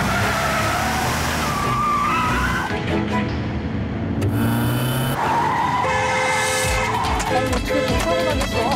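A car's tyres squealing as it is driven hard, over dramatic background music.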